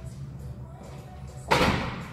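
A wooden plyo box set down on a gym floor with one sharp thud about one and a half seconds in.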